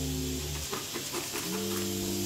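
Background music: sustained chords held and changing in steps, with no beat.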